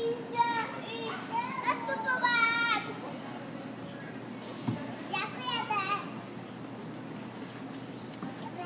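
Young children's high-pitched voices calling out and squealing in short bursts during the first three seconds and again about five seconds in, over a steady hum of store background noise.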